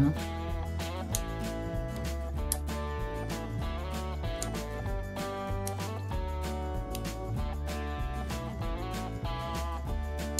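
Background instrumental music with plucked notes at a steady pace.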